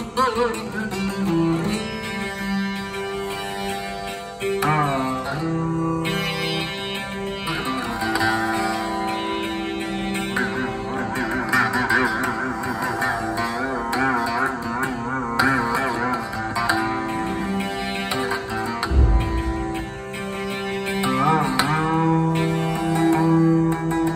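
Rudra veena playing Raag Abhogi in slow, wavering bends and slides over a steady tanpura drone, with a few fresh plucks starting new phrases. A short low thump sounds near the end.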